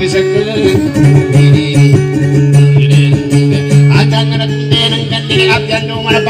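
Acoustic guitar picked in a fast, repeating pattern over a steady low note, playing dayunday accompaniment.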